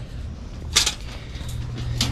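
Wire-mesh live cage trap rattling and clicking as it is handled, with a short cluster of metallic clicks about three-quarters of a second in.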